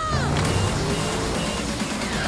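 Dense trailer soundtrack of music layered with action sound effects. A woman's scream falls away just after the start, followed by a low rumble.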